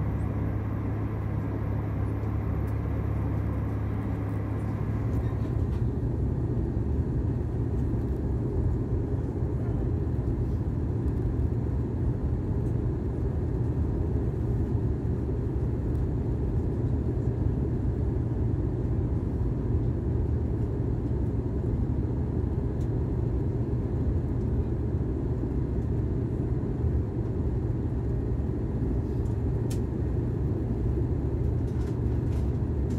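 Airbus A320 cabin noise in flight: the steady rumble of the jet engines and the airflow past the fuselage. The higher hiss thins out and the deep rumble firms up about five seconds in.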